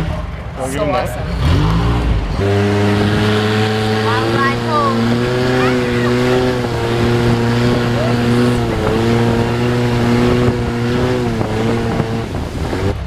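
Long-tail boat engine revving up about two seconds in, then running steadily at one pitch as the boat travels along the canal.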